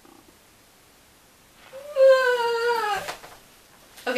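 A woman's high-pitched wail of dismay: one drawn-out cry just over a second long, falling in pitch, starting about two seconds in.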